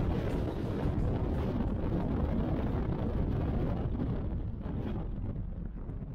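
Wind buffeting an action camera's microphone from a moving car, over a low rumble of road noise. It grows fainter near the end.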